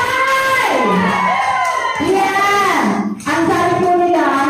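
A woman singing into a handheld microphone, holding long notes that slide up and down in pitch, with a short break just after three seconds in.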